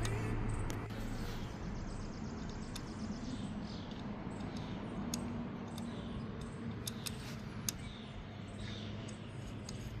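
Quiet outdoor background with a few light clicks and taps from hands handling the motorcycle's headlight shell and wiring, and faint high chirps.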